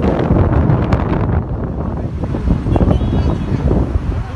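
Strong gusting wind buffeting the microphone, a loud uneven rumble with a few sharp crackles in the first second.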